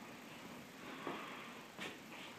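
Quiet room tone in a small room, with one faint short sound near the end.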